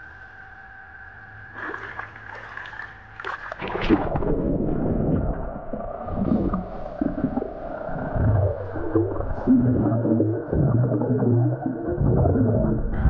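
Muffled underwater sound in a swimming pool from a submerged camera: a faint steady hum for the first few seconds, then from about four seconds in much louder gurgling and bubbling with muffled, voice-like wavering sounds as the swimmer breathes out bubbles underwater.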